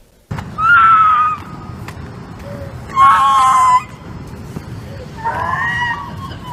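A person screaming three times, each loud, high-pitched scream lasting under a second, with a steady low rumble of street noise underneath.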